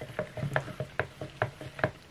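Wooden stir stick clicking and scraping against the inside of a plastic mixing cup as epoxy resin with mica powder is stirred: a run of light, irregular clicks.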